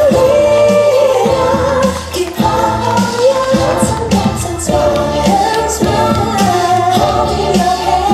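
A woman singing a light pop song over a band accompaniment with a steady, bouncy beat.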